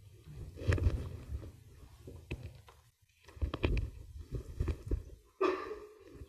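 Microphone handling noise: low rumbling thumps and knocks in several clusters, with a few sharper clicks, as the sound setup is adjusted.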